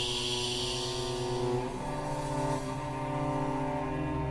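Chamber ensemble holding low, drone-like sustained tones. A high ringing tone fades away in the first second, and the held chord shifts to a new one a little under two seconds in.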